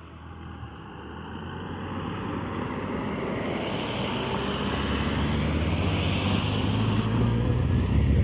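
Road traffic passing over a level crossing: cars and a motorcycle driving by, the tyre and engine noise growing steadily louder.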